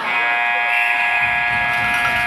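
Ice rink's game horn sounding one steady, loud blast that starts abruptly and holds, typical of the horn marking the end of a period of play.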